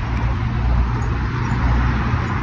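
Steady rumble and hiss of a bicycle moving along a street: wind buffeting the microphone over the tyre's road noise.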